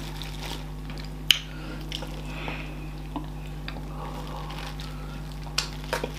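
Wet eating sounds of fufu and soup eaten by hand: a few scattered short clicks and smacks of mouth and fingers, the sharpest a little over a second in, over a steady low hum.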